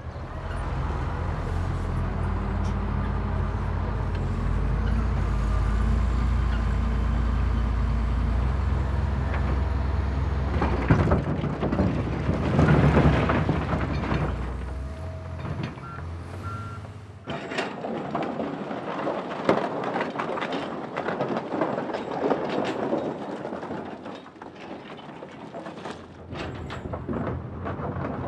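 Heavy diesel earthmoving machines, a bulldozer and a tracked excavator, running with a steady low drone while moving riprap rock; grinding and rock clatter grow loud about halfway through. A few short beeps come at about two thirds of the way, then the engine drone drops away and the knocking and clattering of stones continues.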